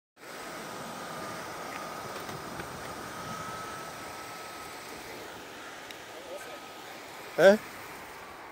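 Outdoor ambience of steady distant traffic noise with a faint steady high whine running through it that fades out about two-thirds of the way through. A voice says a loud, brief "Eh?" near the end.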